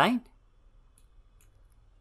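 A man's voice says one word at the start, then a couple of faint computer mouse clicks over low room noise.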